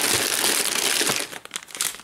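Foil blind-bag packets and small cardboard boxes crinkling and rustling as a hand rummages through a tub full of them. The rustling stops about a second in, leaving a few light crinkles.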